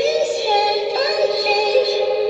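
Pop song playing: a teenage girl's singing voice holds long notes over the backing track, with the pitch sliding up about a second in.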